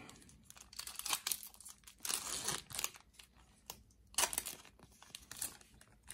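Foil booster-pack wrapper of a Yu-Gi-Oh trading card pack being torn open and crinkled by hand, in irregular crackly rustles, loudest about two seconds in and again just after four seconds.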